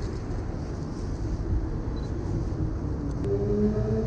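City road traffic: a steady low rumble of passing vehicles. Near the end, a single engine's note comes up and rises slightly as a vehicle pulls away.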